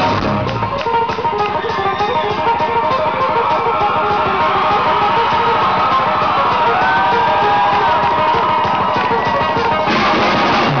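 Live country-rock band in an instrumental break: fast acoustic guitar picking, with the low bass notes dropping out for the break and coming back near the end. Sliding melody notes sound over the guitar a little past the middle.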